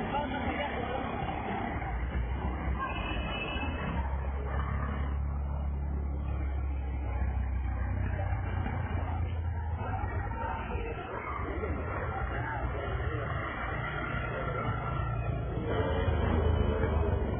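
Street noise: people's voices talking with traffic sounds, and a low rumble that grows stronger for several seconds in the middle.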